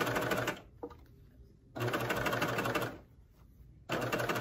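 Baby Lock cover stitch machine stitching a seam on stretch fabric in short stop-start bursts. It runs briefly at the start, stops, runs for about a second in the middle, stops again, and starts up once more near the end.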